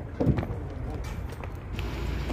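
Footsteps on loose crushed-stone gravel, under a steady low background rumble, with a brief voice about a quarter second in.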